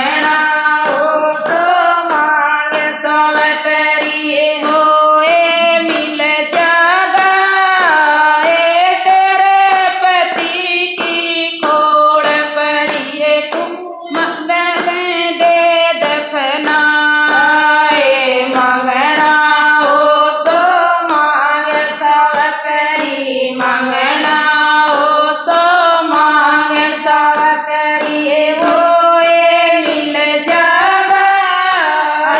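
Several women singing a Haryanvi folk bhajan together in unison, unaccompanied by instruments, with a steady beat of hand claps keeping time.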